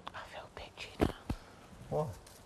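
Soft whispered speech, with two sharp clicks about a second in, a fraction of a second apart, and a short low vocal sound near the end.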